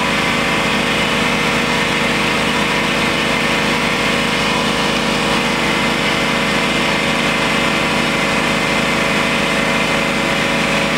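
Milling machine running steadily, its end mill squaring the end of a metal bar held in the vise.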